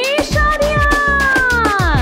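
Upbeat birthday song with a steady drum beat, carrying one long gliding note that rises, holds, and falls away near the end, with a meow-like voice quality.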